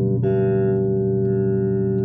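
Dragonfly CJ5 five-string electric bass in active mode: a note plucked about a quarter second in, then ringing on steadily.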